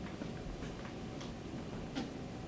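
Faint ticking from a classroom wall clock over quiet room tone, with a slightly louder click near the end.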